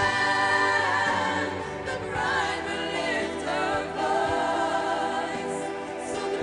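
A women's gospel vocal group singing together, several voices holding and moving between sustained notes.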